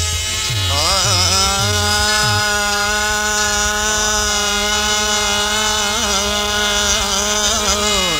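Sindhi folk music: a few drum beats at the start give way to one long held note that wavers at first and bends downward at the end.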